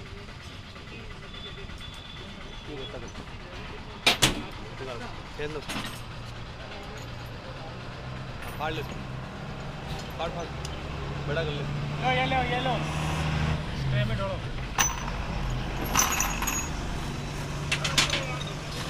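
Workshop sounds around an engine block being assembled: one loud sharp clank about four seconds in and a few lighter clicks near the end. Under them is a low steady hum of a vehicle engine running nearby, growing louder in the second half.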